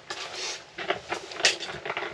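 Hands handling a freshly caught perch and fishing tackle: a run of short rustles and light clicks, the sharpest about one and a half seconds in.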